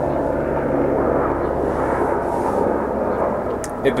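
A steady, low mechanical drone of a distant engine.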